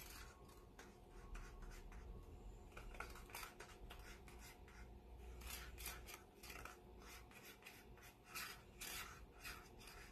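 Faint, irregular scrapes and ticks of a paint stir stick against thin plastic cups as thick pouring paint is scooped and dripped into them, busiest in the second half.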